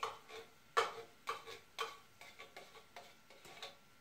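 Metal spoon scraping and clinking against a can and a small stainless saucepan as stew is spooned out, a couple of short ringing clinks a second, the loudest about a second in.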